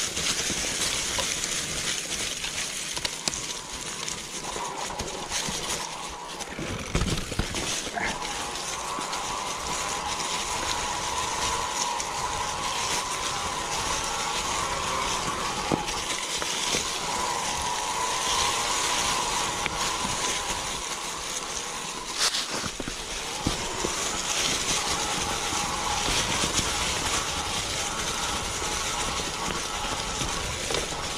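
Mountain bike rolling downhill on a dry, leaf-covered dirt trail: a steady hiss of tyres over leaves and dirt, with a mid-pitched whirr through much of the ride and a few sharp knocks as the bike goes over bumps.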